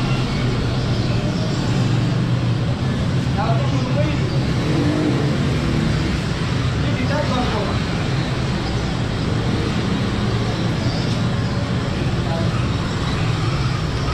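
A steady low hum and rumble of street background noise, with indistinct voices scattered through it.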